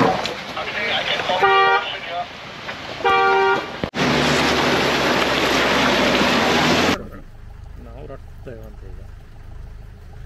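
Two short car horn honks about a second and a half apart, then, after a cut, a loud rush of splashing water for about three seconds as a red Mahindra Thar's tyres plough through a flooded track, stopping abruptly.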